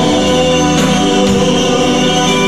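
Live band music: electric guitar, bass guitar and drum kit playing steadily, with sustained singing over them.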